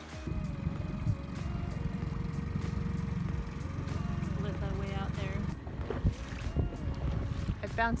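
Small boat's outboard motor running as the boat moves over open water. The rumble drops away about five and a half seconds in.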